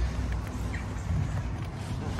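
Outdoor background noise: a low rumble with a faint hiss, strongest near the start and easing off.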